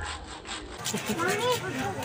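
Faint chatter of children's high voices, with a rubbing, scraping noise.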